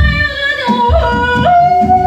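Free-improvised music: a woman's wordless, operatic singing voice leaps between high notes in yodel-like jumps, then settles on a held note about halfway through. Electric bass and drum kit play underneath.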